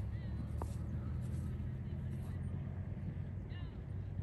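A motor vehicle's engine idling steadily close by, a low even hum.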